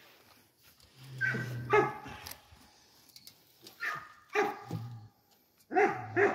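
A dog barking a few times with quiet gaps between, the longest call about a second in.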